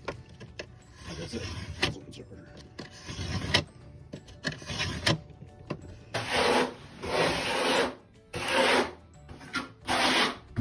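A knife scoring a sheet of backer board: a series of scraping strokes, the last three, close together in the second half, the loudest and longest.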